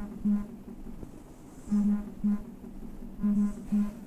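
A mobile phone vibrating on a table with an incoming call: low buzzes in pairs, one longer and one shorter, repeating about every one and a half seconds.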